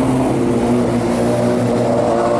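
A loud, steady low engine drone that holds one pitch throughout.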